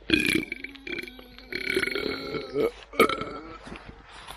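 A man burping, one long drawn-out belch lasting nearly three seconds that rises in pitch near its end. A sharp click comes near the start and another about three seconds in.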